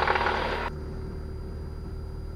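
The Cessna 172's four-cylinder engine, heard through the cockpit intercom as a steady low drone as takeoff power is brought in. A rougher, harsher noise over it cuts off suddenly less than a second in.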